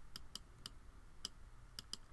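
About six faint, irregularly spaced clicks of a computer mouse.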